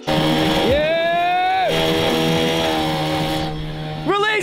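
Small outboard motor running on an inflatable dinghy, churning the water, with a loud rising tone about a second in that holds for about a second.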